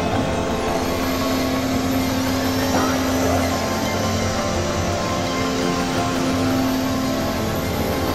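Experimental electronic drone music: a dense, noisy synthesizer texture over sustained low tones that hold steady, with faint high tones gliding above.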